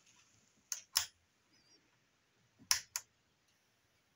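Sharp clicks in two pairs, about a quarter second apart within each pair, as the power button of a Topshak NPS3010W bench DC power supply is pressed and the unit switches on.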